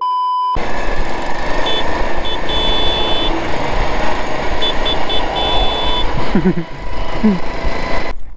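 A test-tone beep lasting about half a second, then the steady running of riding-lawnmower engines with wind noise as one mower is towed behind the other, broken twice by clusters of short high-pitched chirps.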